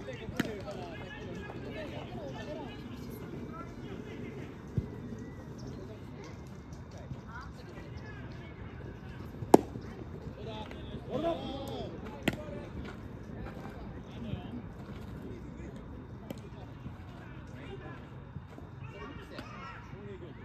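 Ballplayers' voices calling out across a baseball field, with a few short sharp knocks; the loudest, about halfway through, is a single sharp crack.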